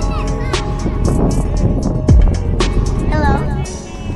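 Loud music with a beat and deep bass thumps, with a voice over it in places.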